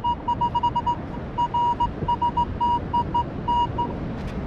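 Minelab Equinox 800 metal detector beeping as its coil sweeps over a buried target. The beeps come as a broken string of short tones at one steady pitch, uneven in length and spacing, rather than one solid tone. This choppy signal goes with the low, jumping target numbers the detectorist is getting instead of a single solid reading.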